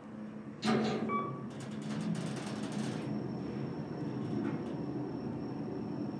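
Kone EcoDisc gearless traction elevator travelling down, heard from inside the cab: a steady low rumble of the ride, with a clatter about a second in and a faint high whine from about halfway.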